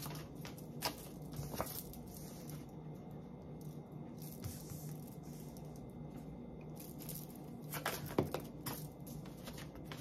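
Tarot cards being shuffled and handled by hand: soft rustling with a few sharp card snaps about a second in and again near eight seconds, over a low steady hum.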